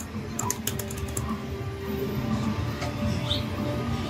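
Music playing over the noise of an amusement arcade, with a quick run of sharp clicks about half a second in.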